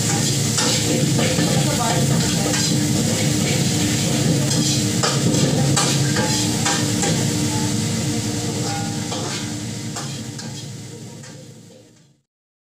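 Food frying in large woks, a steady sizzle with a metal spatula clinking and scraping against the pan, over a steady low hum. The sound fades out over the last few seconds.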